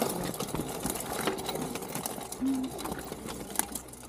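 Small BMX-style bicycle rolling over a stone-paved path, with rapid mechanical clicking and rattling.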